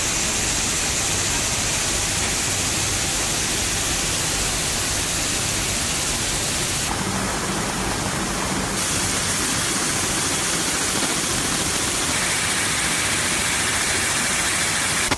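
Steady, even rushing hiss with no distinct beats or tones; its colour shifts slightly about seven seconds in and again near the end.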